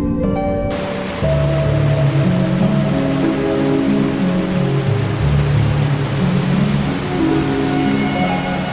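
Background music with sustained notes, joined abruptly about a second in by the steady rush of a small waterfall and rapids pouring over rocks.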